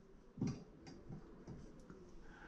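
A few faint knocks and ticks of small objects handled at a workbench, the loudest about half a second in.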